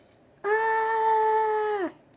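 A child's voice holding one high note for about a second and a half, level in pitch, then dropping at the end.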